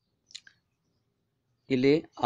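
Two short, faint clicks close together about a third of a second in. A man starts speaking near the end.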